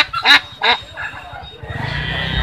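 Live domestic ducks quacking, three loud calls in the first second or so, then quieter.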